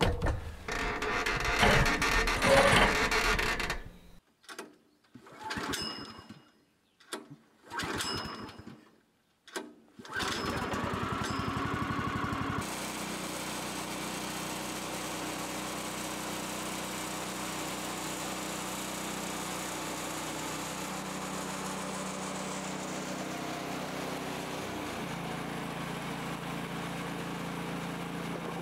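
Portable band sawmill: a few short, separate mechanical sounds over the first ten seconds, then the sawmill's engine runs steadily while the band blade cuts along a squared timber, its note shifting slightly near the end.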